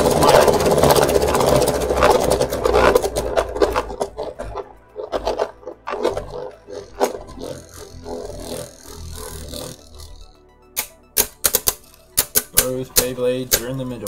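Two Beyblade Burst spinning tops whirring and scraping around a plastic stadium. The spinning is loudest for the first few seconds, then fades into scattered sharp clicks as the tops knock together. Near the end there is a quick run of sharp clacks as the slowing tops collide.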